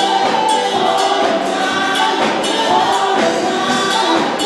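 Gospel choir singing with a live church band and percussion.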